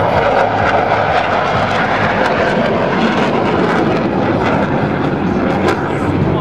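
Jet noise from Black Knights F-16 fighters flying an aerobatic display overhead: a loud, steady rushing sound that eases slightly near the end.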